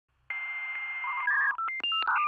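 Electronic beeps like telephone dialing tones, starting about a third of a second in: one held tone over a hiss, then a quick run of short beeps at changing pitches, opening an electronic intro jingle.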